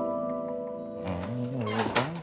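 Soft background music fading on a held chord, followed about a second in by a wavering, voice-like cry that rises to a loud peak just before the end.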